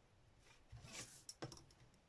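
Faint handling sounds as a metal ruler and marker are lifted off a sheet of paper: a brief rustle just before halfway, then two light clicks in quick succession.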